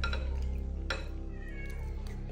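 A metal spoon clicks twice against a glass bowl as a mouthful is scooped up, over a steady background music bed. Near the end there is a brief, faint high gliding cry, like a cat's meow.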